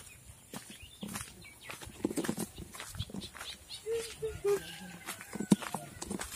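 Faint short calls of a small animal a few seconds in, among light handling clicks.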